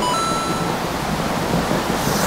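A wheeled suitcase rolling over a tiled floor, a steady rumbling rattle. A short bright chime rings right at the start.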